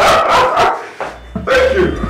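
A man shouting excitedly and laughing in short yelping bursts. A low steady hum comes in about halfway through.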